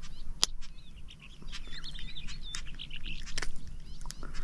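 Wild birds chirping and warbling with short wavy high calls in the middle, over a low steady background, with a couple of sharp clicks.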